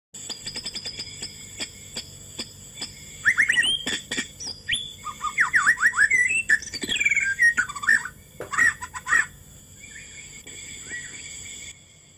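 Birds chirping in quick rising and falling calls, strongest in the middle, over faint steady high tones and a light regular ticking early on.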